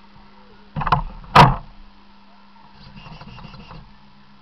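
Two loud, sharp knocks close to the microphone about a second in, then a brief soft rattle near the end, over a faint steady hum.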